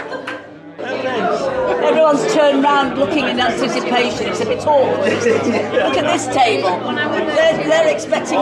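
A roomful of guests chatting, many voices overlapping at once, with a short lull just under a second in before the talk picks up again.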